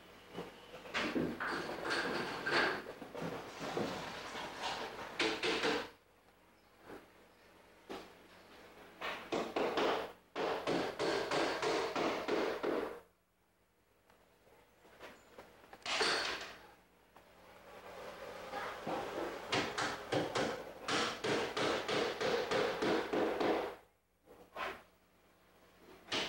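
Bursts of rapid scraping strokes, each lasting a few seconds, separated by short pauses, from hand work on drywall.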